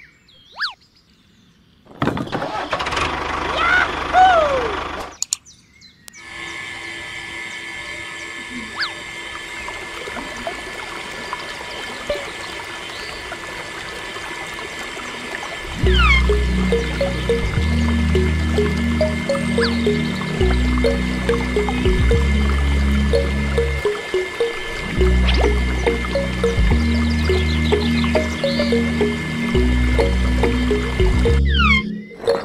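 Small brushed DC motor driving a miniature water pump, running steadily with water splashing. From about halfway, background music with a steady beat comes in over it and is the loudest sound.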